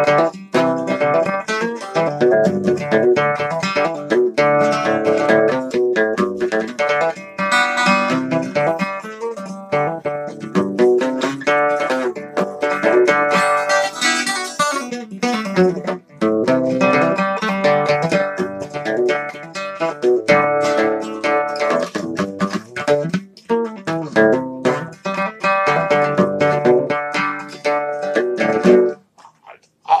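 Acoustic guitar played solo: an instrumental bluegrass lead break of picked notes and chords, which the player says almost turned into a blues lead. The playing stops about a second before the end.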